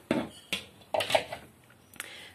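A few sharp clicks and clinks, about three in the first second, from a clothes hanger knocking against its hook and the door as a hanging dress is turned round by hand.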